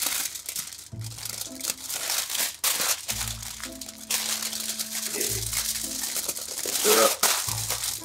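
Crinkly foil wrap crackling and crumpling as it is rolled up tightly around a filling of rice, with dense sharp crackles throughout. Background music underneath, with a low bass note every couple of seconds and a held note in the middle.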